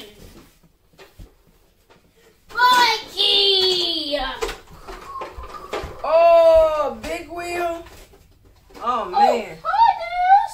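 A high-pitched voice calling out in three drawn-out, sing-song exclamations, about two and a half, six and nine seconds in, with quiet room tone between them.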